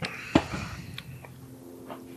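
A few short knocks and clicks, the loudest about a third of a second in.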